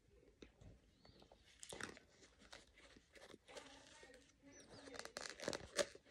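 Faint crunching and chewing of scented laundry starch chunks close to the mouth, as scattered crunches that grow louder and more frequent in the last second or so.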